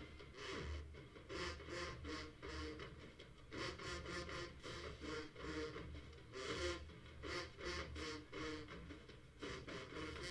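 Marching band drumline playing a cadence: sharp snare and cymbal strokes in a steady, even rhythm, heard from a distance across a stadium.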